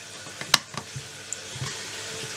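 A sharp click about half a second in, with a few fainter ticks, as a replacement chip on its decoder board is pushed down into its socket on a 14CUX engine control unit's circuit board. A steady hiss runs underneath.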